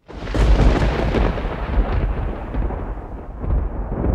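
Thunderstorm sound effect: a loud rumble of thunder that starts suddenly and rolls on unevenly, with most of its weight in the deep low end.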